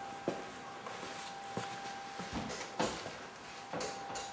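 Light handling clicks and knocks as a hand-held timing light is worked around the engine bay, about four over a few seconds, the later ones with a dull thud. A faint steady whine sits underneath.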